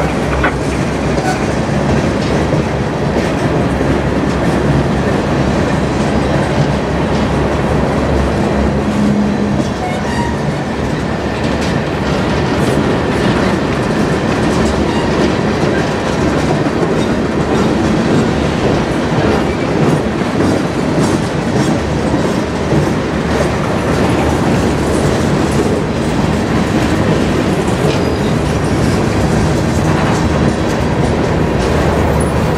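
Loaded freight train of covered hoppers and tank cars rolling past close by. The steady, loud rumble of the cars carries the clickety-clack of their wheels over the rail joints.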